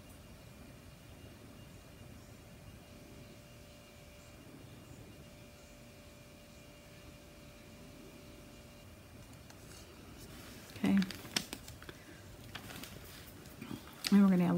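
Quiet room tone with a faint steady hum while paint is poured, then a short run of light clicks and taps about eleven seconds in: plastic paint cups being handled.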